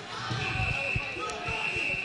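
A referee's whistle blown in one long steady blast of about a second and a half, with a brief break in the middle, over a few dull thuds in the arena.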